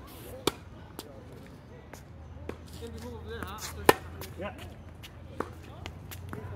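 Tennis ball being struck by rackets and bouncing on a hard court during a rally: a string of sharp pops spaced about a second or more apart, the loudest a little past the middle.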